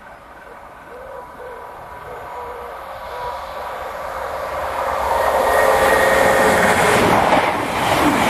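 Class 221 Super Voyager diesel-electric multiple unit approaching at speed and running through the station. It grows steadily louder over about five seconds, then is loud and close as it passes near the end.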